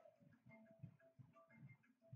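Near silence: faint room tone with scattered small ticks.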